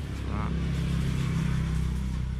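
Low, steady engine hum of a motor vehicle passing on the road, growing louder through the middle and easing off near the end.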